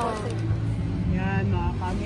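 Voices over a steady low hum of store background noise. One voice trails off at the start, and a high voice speaks briefly about a second in.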